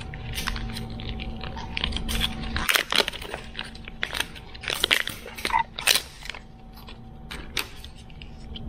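Blue plastic shrink wrap being peeled and torn off a lithium-ion battery pack by hand, making irregular crinkling and crackling, loudest around the middle.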